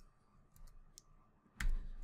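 Computer keyboard keystrokes: a few light, scattered key clicks, then a louder keystroke about a second and a half in.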